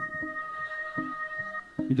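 Live instrumental accompaniment between sung lines: a held, organ-like chord that stops at about a second and a half, with a few short plucked guitar notes under it.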